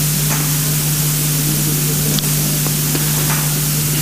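Loud, steady hiss with a constant low hum underneath: electronic noise from the microphone and sound system.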